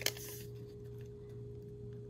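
Quiet room tone with a faint steady hum, and a single light tap right at the start, as a clear acrylic ruler is set against the cardstock.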